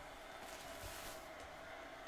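Near silence: faint, steady room tone with no distinct sound events.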